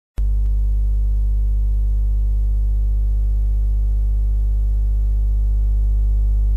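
A steady low hum with a stack of overtones, starting abruptly a moment in and holding at an even level.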